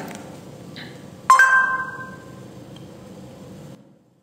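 A single bell-like chime, struck about a second in and ringing out over about a second, over faint room noise. The sound cuts off abruptly just before the end.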